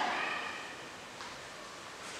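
Faint scratching of chalk on a blackboard as a word is written, with one light tap about a second in.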